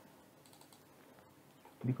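Faint clicks of a computer mouse over a quiet room background. A man's voice comes in near the end.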